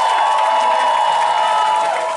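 Concert crowd cheering after a rock song, with several long, high-pitched shouts held over the noise.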